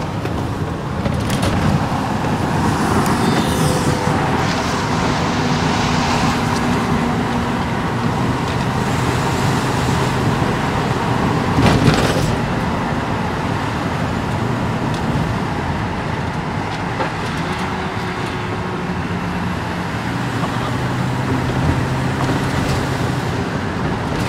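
Steady engine drone and road noise inside a moving car's cabin, with one sharp thump about halfway through.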